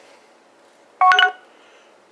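Short electronic beep from an HTC One M8 smartphone's speaker about a second in, lasting about a third of a second: the voice dialer's prompt tone, signalling that the phone is now listening for a spoken call command.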